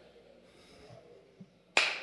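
Quiet pause, then a man's hands clap once sharply near the end, beginning a steady clapping that imitates applause.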